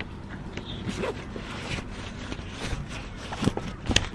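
Faint scattered clicks and rustles of an aluminium awning arm being worked into its bracket by hand, over a low steady background.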